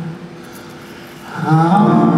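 Live singing with grand piano accompaniment fades out into a brief lull. Voice and piano come back in together about a second and a half in.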